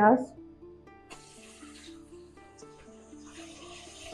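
Onion paste sizzling as it hits hot ghee in a wok, a hiss that starts suddenly about a second in and carries on, over soft background music of plucked-string notes.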